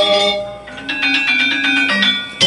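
Balinese gong kebyar gamelan playing dance accompaniment: bronze metallophones ring on, the music dips briefly about half a second in, then a fast run of ringing metallophone strokes comes back in.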